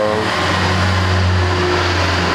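A motor vehicle's engine running close by, a steady low drone that fills the pause in speech and eases near the end.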